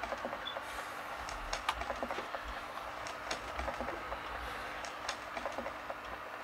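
Smartphone keyboard clicks from texting, short irregular taps several a second over a faint steady hiss.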